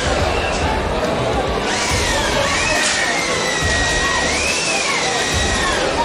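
Spectators at a rugby sevens match cheering as a try is scored, with one long, shrill, wavering cry that rises and falls in pitch, starting a couple of seconds in.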